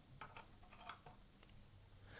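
Near silence, with a few faint light ticks from the metal parts of a tap splitter tool being handled and fitted together.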